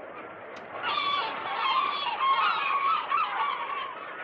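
A flock of gulls calling, many cries overlapping at once; the chorus swells about a second in and thins out near the end.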